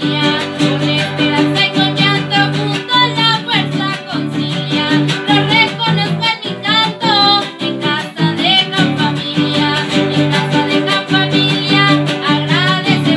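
Huapango played by a huasteco trio: a violin melody with slides and ornaments over the rhythmic strumming of jarana and huapanguera.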